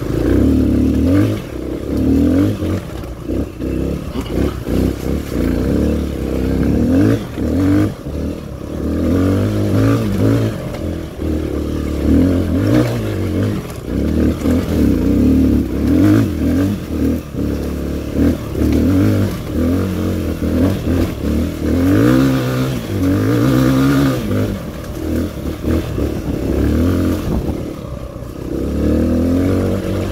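Dirt bike engine revving up and down as the rider opens and closes the throttle, its pitch rising and falling every second or two.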